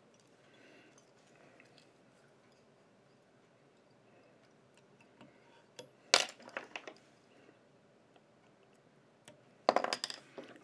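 Sharp clicks and clinks of small hard objects being handled, such as tools set down on a tying bench: a short cluster about six seconds in and another near the end, over low room noise.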